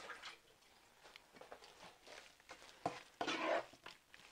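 Wooden spatula stirring crumbled lentil mixture in a nonstick frying pan: faint scrapes and light knocks, with a sharp click and then a louder scrape near the end.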